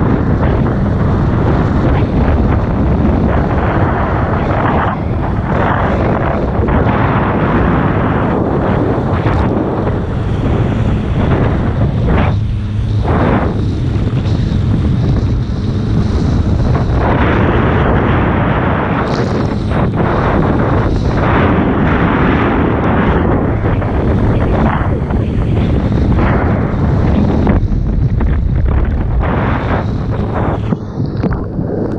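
Heavy wind buffeting on an action camera's microphone, mixed with the rushing hiss of a single water ski cutting across the water at towing speed. The rush swells and dips as the ski carves across the wake and throws spray.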